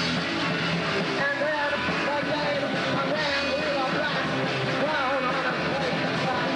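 Punk rock band playing live: electric guitar and drums, with wavering held notes over the steady din.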